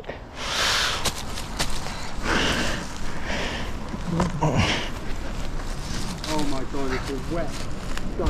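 Someone scrambling over a steep bank of dry leaves, moss and twigs: irregular bursts of rustling and scuffing from leaves, vegetation and clothing. Short, low voice sounds come in briefly near the end.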